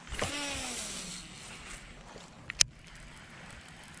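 Baitcasting reel's spool spinning out on a cast, a whir whose pitch falls over about a second as the spool slows. A single sharp click about two and a half seconds in.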